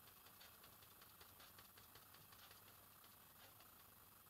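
Near silence, with faint soft ticks a few times a second: a foam sponge dabber being dabbed on a palette to work in white acrylic paint.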